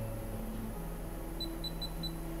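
Touchscreen key-click beeps from a MAST Touch tattoo power supply as its settings menu is stepped through: three short high beeps in quick succession in the second half, over a steady low hum.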